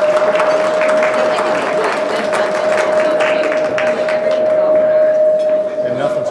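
A loud steady whine from the house PA system, holding one pitch throughout: an unwanted tone from the sound system that staff are trying to turn off. Under it, audience murmur and scattered clapping.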